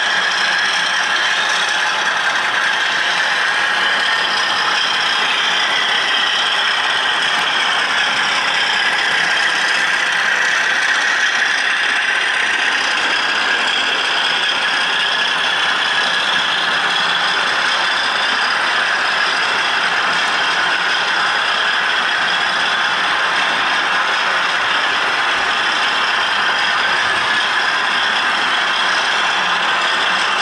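Model railway layout running: a steady whirr of small electric motors and gears, its pitch drifting slowly up and down.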